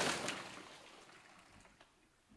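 The echoing tail of a loud crash, with a couple of small clatters, dying away within about the first second.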